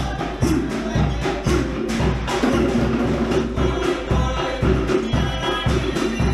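Live Cook Islands band music for an ura dance: a steady beat of bass notes and sharp percussion strikes, with singing.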